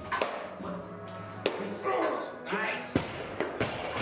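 Loaded barbell with bumper plates jerked and dropped onto the lifting platform, giving a few sharp knocks, the last two near the end as the bar lands. Background music and voices run underneath.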